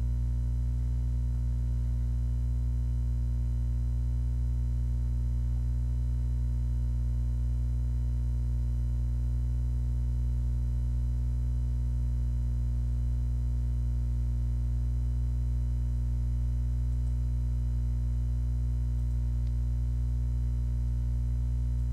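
Steady low electrical hum, a mains-type buzz with a stack of overtones, holding constant without any change.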